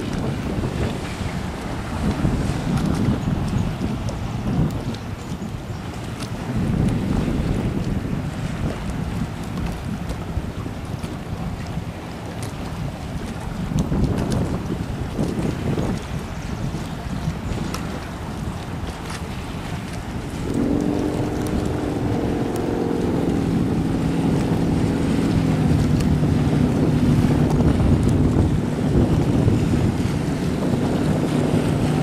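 Sea-Doo RXT personal watercraft running on open water, heard under heavy wind noise on the microphone and water rush. About two-thirds of the way in its engine's steady hum comes through clearly, stepping down in pitch a couple of times as the craft slows.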